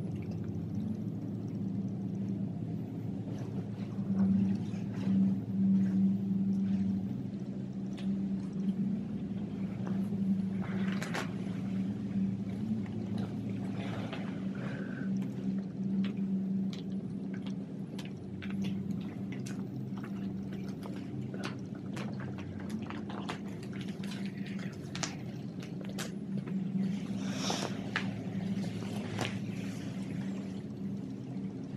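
Thin vinyl of a deflated pool float crinkling and rustling in short irregular bursts as it is handled and spread out, over a steady low hum.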